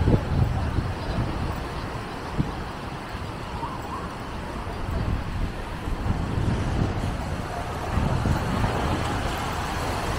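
Wind buffeting the microphone in a gusty low rumble, over the wash of small waves breaking on a sandy beach.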